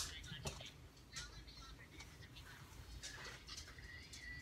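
Faint whispering: short, breathy, unvoiced bursts of a whispered phrase, with low room noise beneath.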